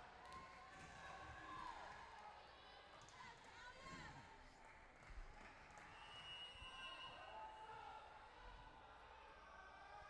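Near silence: faint, distant voices in a gymnasium between rallies.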